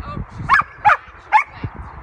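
A dog barking three times in quick succession, about half a second apart.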